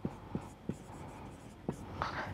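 Marker writing on a whiteboard: faint scratching strokes with a few light ticks as the pen touches down.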